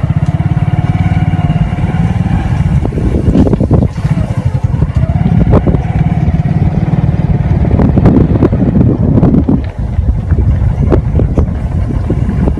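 A vehicle engine running steadily close by, with a fast, even throb and a wavering whine above it, and a few sharp knocks and rattles.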